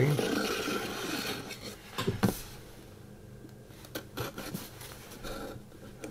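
Hobby knife scraping and cutting along a cellophane-wrapped cardboard box: one long rasping stroke at the start, two sharp clicks about two seconds in, then quieter rustling of the plastic wrap.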